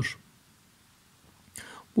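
A pause in spoken narration: the last word trails off, near silence follows, and a short faint in-breath comes just before the speech resumes.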